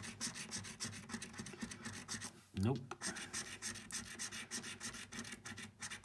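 A coin scraping the scratch-off coating from a scratchcard in rapid repeated strokes, with a short break about two and a half seconds in.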